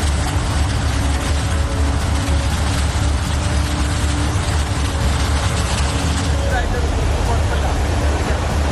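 Loud, steady rush of a flood torrent with a heavy low rumble. The high hiss eases slightly after about six seconds.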